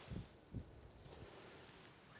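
Near silence: quiet room tone with a couple of faint, brief soft sounds in the first half-second.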